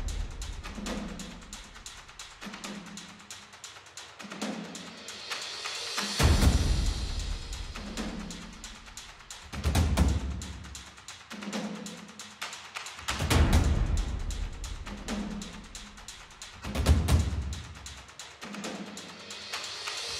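Dramatic background music built on deep, booming timpani-like drum hits in a slow, steady rhythm, with a sustained low pitched layer underneath.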